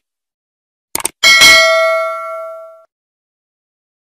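Subscribe-button animation sound effect: a quick pair of mouse clicks about a second in, then a single bell ding that rings out and fades over about a second and a half.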